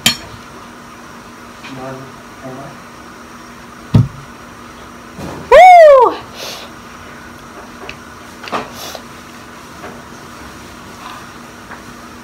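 A woman's loud 'woo' cry, rising then falling in pitch, about halfway through, reacting to the burn of very spicy ramen. It comes just after a single sharp knock on the table, and a light clink of a fork on a dish sounds at the start.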